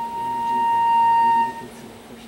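A flute sounding one steady held note, a concert B-flat, for about a second and a half, played as a single tuning note.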